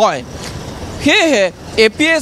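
Road traffic passing close by: the even rush of a vehicle going past, between fragments of a man's voice.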